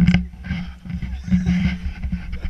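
Wind buffeting the camera microphone as an uneven low rumble, with a short spoken word just after the start.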